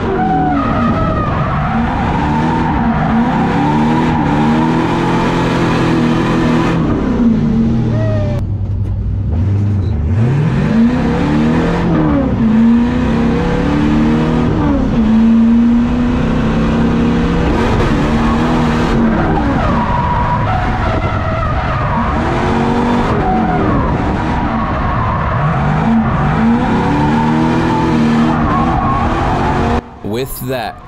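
Onboard sound of an LS V8-swapped BMW E30 drifting: the engine revs climb and fall again and again as the throttle is worked through the corners, with a brief dip in the engine note about eight seconds in, and tyres skidding under it.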